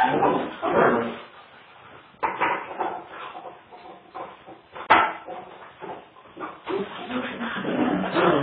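Two dogs playing together, making vocal noises in irregular bouts, with two sharp knocks about two and five seconds in.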